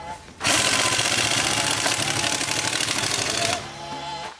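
Impact wrench hammering loudly for about three seconds, driving the bolt of a ball joint puller to press the front suspension arm's ball joint out of the steering knuckle.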